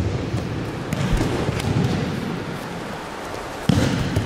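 Aikido practice on gym mats: a few light knocks of feet and bodies on the mats, then a louder thump near the end as the partners close for a throw.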